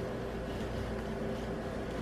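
Steady low hum of room background noise with faint constant tones. It runs unbroken with no knocks or cuts, and the apple slicer pressing slowly into the pear makes no distinct sound.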